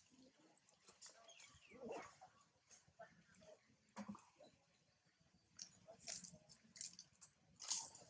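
Faint, scattered soft squeaks and small clicks from the monkeys, with a sharper click about four seconds in.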